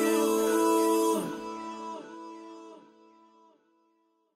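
The closing guitar chord of a slow love song, held with a few last plucked notes, ringing and dying away to silence about three seconds in.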